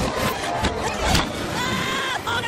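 Cartoon film soundtrack played backwards at double speed: a dense, garbled mix with short pitch glides and scattered clicks.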